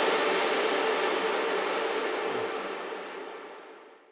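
Long reverb tail of an electronic synth lead, washing out and fading steadily to silence over about four seconds once the music stops. It comes from two layered reverb sends, a plain one and a sidechained one, which together make the lead sound huge.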